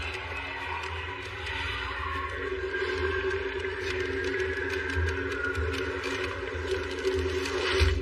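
Film score music building up in level, layered with crackling, sparking sound effects as a painting turns into a magical doorway, peaking just before the end.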